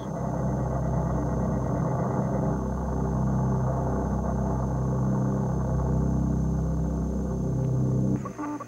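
Film sound effect of a rocket engine: a steady low rumble that holds level and cuts off suddenly at the end.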